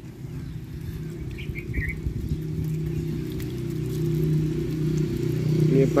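Water poured by hand from a container over clay pots of stevia cuttings, trickling onto wet soil. A low steady hum grows louder through it.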